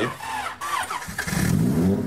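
Honda D16A6 SOHC non-VTEC four-cylinder with a Bisimoto Level 2.x regrind cam, started from cold: it cranks, catches about a second in, and its revs rise.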